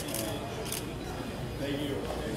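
Quiet talk in a room, with two short sharp clicks about half a second apart early on.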